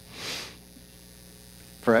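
Steady low mains hum from the microphone system, with a short breathy hiss about a quarter of a second in.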